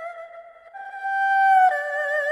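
Slow Chinese-style instrumental music with a solo flute melody. A held note glides downward, a new note starts about 0.7 s in, and near the end it steps down to a lower note with vibrato.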